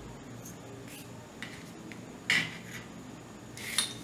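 Steel scissors snipping off loose overlock thread ends at a garment's seams: several short, crisp metallic snips, the loudest a little over two seconds in and another near the end.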